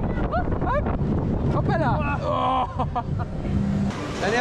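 Children's roller coaster train rumbling along its track, with the riders' short rising whoops twice in the first two seconds and held vocal 'ooh' sounds after.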